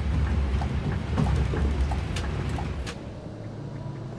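Low, steady road and drivetrain rumble inside the cabin of a Scania K360iB coach travelling at speed, with light ticks repeating every fraction of a second. About three seconds in, the rumble falls away to a quieter, lower hum.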